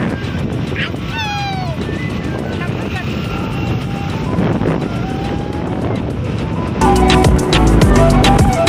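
Steady road and wind noise from a moving vehicle, with a child's voice now and then. Background music with a steady beat starts abruptly about seven seconds in.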